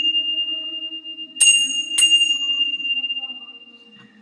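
Little Tibetan bells struck twice, about a second and a half in and again half a second later, over the ringing of an earlier strike. They give one clear high ringing tone that slowly fades away by the end.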